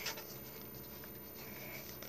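Faint rustling and scraping of a coloring book's paper pages handled by fingers, over quiet room noise.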